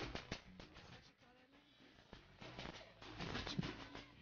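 Faint live tropical band sound at an outdoor show: a few sharp percussion hits at the start, then from about halfway a noisy stretch of crowd sound with scattered voices.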